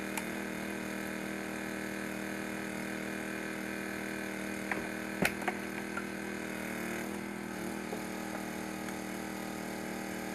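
Small gas engine of a hydraulic rescue-tool power unit running steadily, with a couple of sharp cracks about five seconds in.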